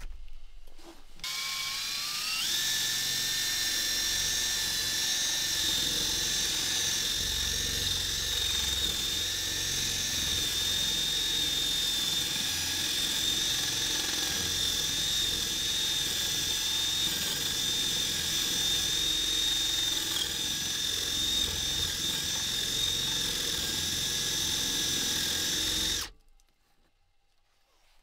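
Cordless drill starting up with a whine that rises in pitch about a second in, then running at a steady high whine while it works into a log wall. It cuts off suddenly at the very end.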